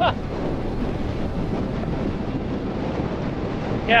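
Strong, steady wind buffeting the microphone: supercell inflow winds blowing at about 50–60 miles an hour, at severe gust level.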